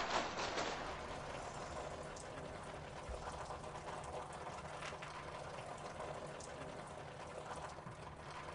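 Water splashing down from a burst water balloon, dying away over the first second, then faint steady trickling with a few scattered drips.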